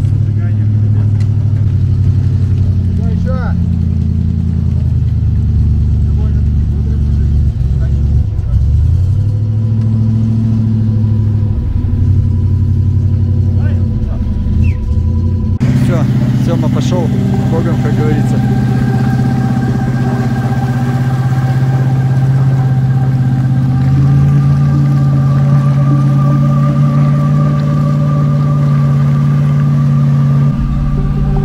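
Truck engine running at low revs, its pitch shifting as it works through floodwater. After a sudden change about halfway through, a steadier engine drone.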